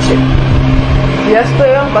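A steady low hum, with a woman's speaking voice coming back about one and a half seconds in.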